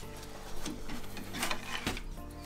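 Handling noise of a cloth towel being folded and rolled on a wooden table, with a few light knocks and clicks, the sharpest near the end.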